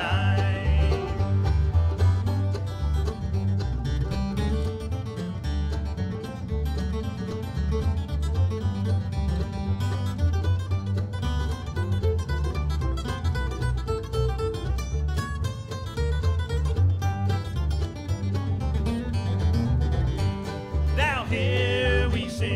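Bluegrass band playing an instrumental break, with acoustic guitar picking the lead over banjo and upright bass. A sung line ends at the very start, and singing comes back in near the end.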